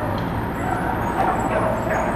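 Steady low engine hum of a road vehicle running nearby, over a constant wash of street noise.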